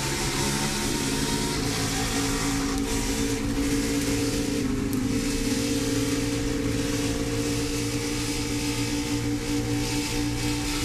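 NASCAR Xfinity stock car's V8 engine running hard at racing speed, heard from inside the car with a constant rush of noise over it. The engine note holds fairly steady throughout.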